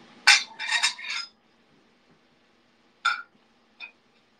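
Ceramic dishes clinking together: a quick cluster of three or four ringing clinks in the first second, one clink about three seconds in, and a fainter one just before the end.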